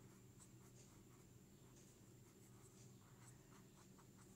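Faint scratching of a Master Urdu 604 pen tip on ruled notebook paper as capital letters are written, in short, irregular strokes.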